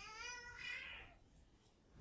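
A faint, long, high-pitched wavering wail from the next room, ending about a second in.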